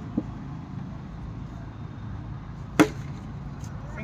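Cricket bat and ball knocks: a light knock just after the start as the bat comes through the ball, then a single sharp, louder crack near three seconds in.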